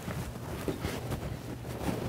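Soft rustling and rubbing close to the microphone as a paper tissue is wiped across a nose, over a low steady hum, with a few faint handling knocks.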